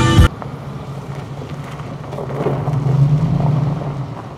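Loud music stops abruptly a moment in, leaving a car's steady low engine and road hum, which grows louder around the middle and drops away near the end.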